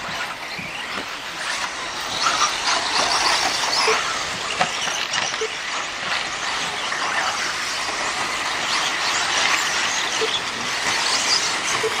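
Several 4WD RC off-road buggies racing on a dirt track: a steady high-pitched whine from their motors and drivetrains mixed with the hiss of tyres on dirt, with the pitch shifting as the cars speed up and slow down.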